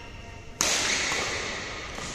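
A badminton racket strikes the shuttlecock about half a second in, a single sharp crack that rings on in the hall's echo for over a second.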